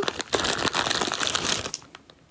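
Crinkling of a chocolate wrapper or packet being handled, a dense crackle that stops about one and a half seconds in, followed by a few faint clicks.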